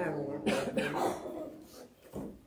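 A man coughing and clearing his throat: a few short, sharp coughs about half a second in, trailing off by the end.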